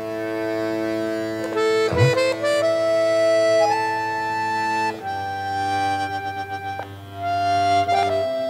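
Soft background score of held chords in a reedy, accordion-like tone, with a slow melody stepping upward through the middle and a change of chord about five seconds in.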